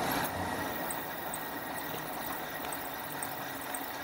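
Steady rolling noise of a fat-tyre e-bike riding slowly downhill on pavement, with a faint run of light high ticks over it.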